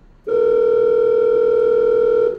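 Telephone ringback tone of an outgoing call: one steady, loud ring lasting about two seconds, starting a quarter second in.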